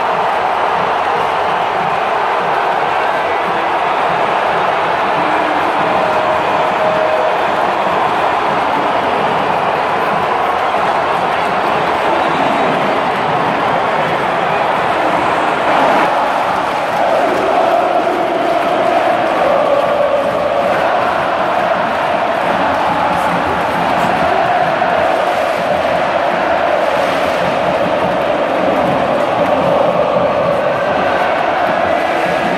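A stadium crowd of football supporters singing a chant together, loud and steady. The tune of the massed singing stands out more clearly in the second half.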